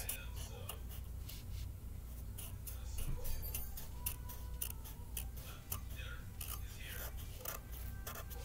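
A felt-tip permanent marker drawing zigzags on a sheet of paper on a wooden table, making a run of short, quick scratches and taps as the tip changes direction. Faint television voices and a low hum sit underneath.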